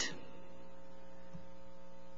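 Steady electrical hum made of several fixed, unwavering tones.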